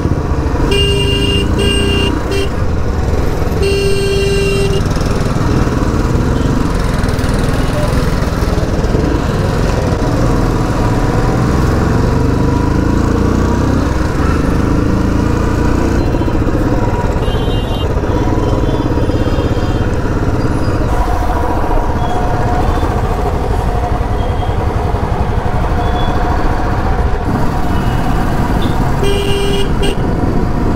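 Royal Enfield Standard 350's single-cylinder engine running under way through city traffic. Horns toot in short beeps about a second in, with a longer honk around four seconds and another near the end.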